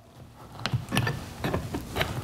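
A few short clicks and scrapes of an aluminum compressed-air pipe being pushed and lined up into a T fitting by hand.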